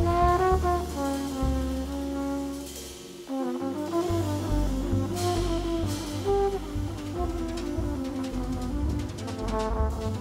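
Live jazz quartet: a flugelhorn holds sustained melody notes over piano, bass and drums played with brushes. The band thins out briefly about three seconds in, then comes back in.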